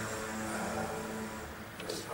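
Room tone in a pause between speakers: a steady low hum with faint background noise, and a small click near the end.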